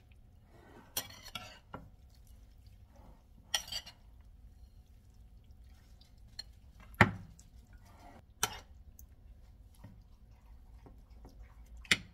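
Metal utensils stirring shrimp ceviche in a bowl: intermittent clinks and scrapes of metal against the bowl, the loudest about seven seconds in.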